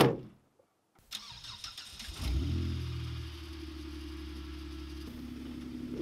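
A Jeep Wrangler's door slams shut, then after a short pause the engine is cranked and catches about two seconds in, flaring briefly before settling into a steady idle.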